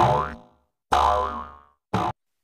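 Cartoon-style sound effects from an animated video intro. Two short pitched sounds each fade out within about half a second to a second, the first bending in pitch, then a brief burst cuts off near the end.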